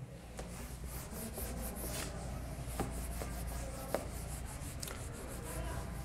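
Whiteboard being wiped with an eraser: a faint, steady rubbing with a few small clicks.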